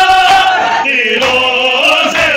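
A group of men chanting a noha, a Shia mourning lament, loudly in unison. One long held note gives way about a second in to the next line.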